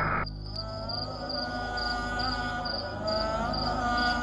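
Crickets chirping steadily, about two chirps a second, over a soft background drone of held, slowly gliding tones.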